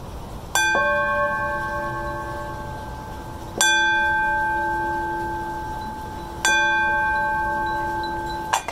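Two metal singing bowls struck with wooden mallets, three strikes about three seconds apart, each ringing on in several tones and fading slowly. They are rung to open a Buddhist chant.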